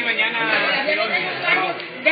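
Chatter of several people talking at once, with a man briefly saying "ja" near the end.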